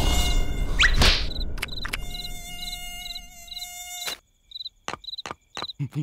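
Cartoon sound effect of a mosquito buzzing: a high pulsing hum, about three pulses a second, over a steady pitched tone that cuts off about four seconds in. Then a run of short, sharp clicks in near silence.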